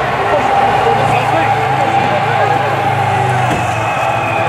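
Many people talking and calling out in the street over the engines of a slow-moving vehicle convoy, with a steady low engine hum that stops shortly before the end.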